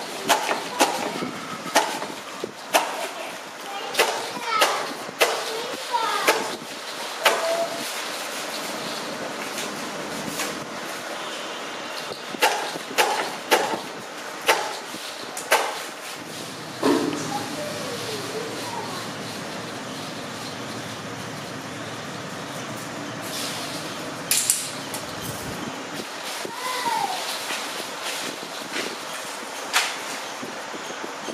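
Hand lever blade cutter chopping bundles of paper firecracker tubes: a run of sharp chops about a second apart for the first several seconds, then a second run of chops near the middle. After that, softer clicks of loose cracker tubes being handled.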